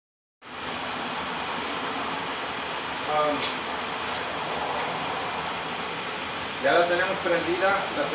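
A Ford 3.5 V6 idling steadily while it warms up after a cylinder head and water pump replacement. It runs smoothly, with no lifter tick or other noise. The sound drops out for a moment at the very start.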